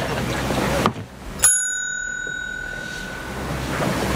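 Desk service bell on a counter struck once: a single bright ding that rings out and fades over about two seconds.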